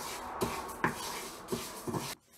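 Wooden spatula stirring dry moong dal in a small nonstick frying pan while it dry-roasts: the grains make a steady scraping rustle, with a few light knocks of the spatula against the pan.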